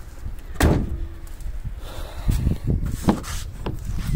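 A car body panel slams shut about half a second in, with a short metallic ring after it. Footsteps follow, then a sharp latch click near three seconds as a car door is opened.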